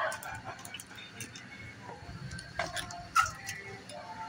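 Scattered light knocks and clatter as a small outboard motor is handled and set back up on a shelf, with a sharper knock about three seconds in. Faint muffled voices are heard underneath.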